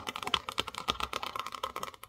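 Long fingernails tapping rapidly and irregularly on the hard, embossed cover of a notebook, a quick run of sharp clicks.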